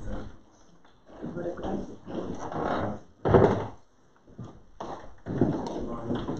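Indistinct, low speech in short phrases with pauses, loudest a little over three seconds in.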